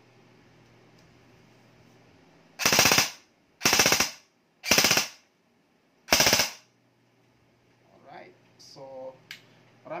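Double Bell M4 electric airsoft rifle (AEG) firing four short full-auto bursts, each about half a second long, with the rapid rattle of the gearbox cycling in each burst.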